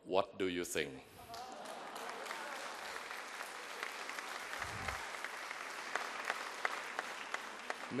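Audience applauding steadily for several seconds, after a few spoken words at the start.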